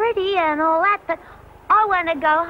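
A high cartoon rabbit character's voice making wordless, drawn-out cries that bend up and down in pitch, with a short break about a second in.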